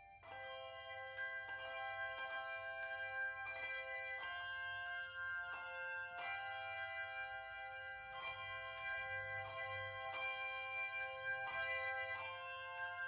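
Handbell choir playing a slow tune: chords of ringing handbells struck about twice a second, each note sustaining into the next. The phrase begins a moment in, after a held chord has died away.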